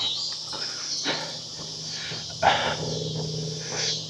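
Steady high-pitched chorus of insects outdoors at dusk. A low vocal sound from the man begins about two and a half seconds in and lasts to near the end.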